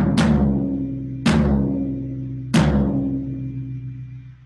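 Floor tom struck in the centre of the head with a drumstick three times, a little over a second apart, each hit ringing out in a low, sustained tone that slowly dies away. It is a tuning check after loosening the resonant head, and the ring has a slightly "basketball-y" quality the drummer wants to tune out.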